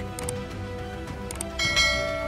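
A subscribe-button sound effect over soft background music: two faint mouse clicks, then a bell-like chime rings out about one and a half seconds in and keeps ringing.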